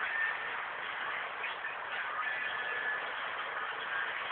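Steady background noise with no distinct sound standing out.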